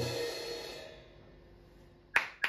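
A single crash cymbal hit that closes the piece of live noise-metal music, cutting off the sustained distorted guitar drone. The cymbal rings out and fades over about a second and a half.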